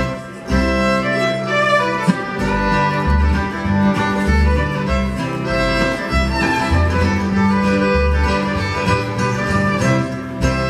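Live bluegrass string band playing, the fiddle prominent over acoustic guitar, mandolin and plucked upright bass, with a brief lull just after the start.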